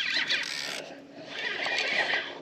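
A fishing reel being cranked, a soft mechanical whirring that dips in level about halfway through.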